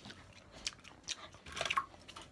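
A person chewing and biting food close to the microphone, with a few short crunches about half a second in, a second in, and a cluster near the end.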